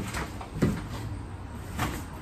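A door being opened and someone stepping through it: three knocks and thumps, the loudest a little over half a second in.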